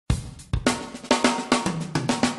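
Drum kit opening a TV programme's theme music: a run of sharp snare and bass-drum hits with cymbals, about four a second.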